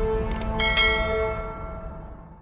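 Logo-sting music holding steady tones, with a quick double click and then a bright, bell-like chime that starts just over half a second in and rings away as everything fades out. The click and chime are subscribe-button and notification-bell sound effects.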